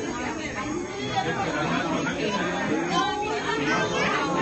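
Several people talking over one another: steady background chatter of overlapping voices.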